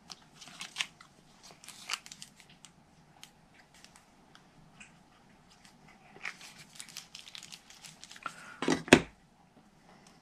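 Small cardstock pieces being handled and pressed down on a craft mat: light paper rustles and little taps, with one sharp, louder tap near the end.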